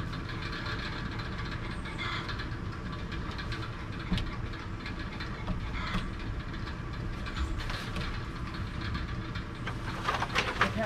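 An air compressor running steadily with a low rumble, with one sharp click about four seconds in.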